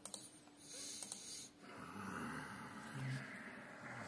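Faint breathing of a person close to the microphone: two long, noisy breaths, with a short low hum about three seconds in.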